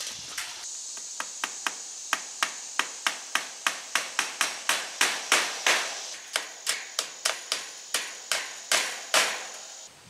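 A hand hammer striking repeatedly, about two to three sharp blows a second with short ringing tails, working at a wooden corner post of a wire-mesh chicken coop frame. A steady high insect drone runs underneath.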